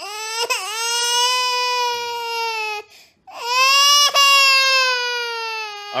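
Two long, drawn-out baby-like crying wails, the second louder, with a short break between them.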